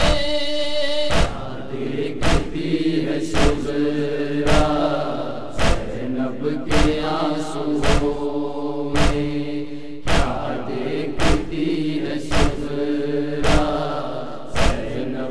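Noha recitation: a solo voice holds a long sung note that ends about a second in. A group of voices then chants the refrain in unison, over a steady thump about once a second.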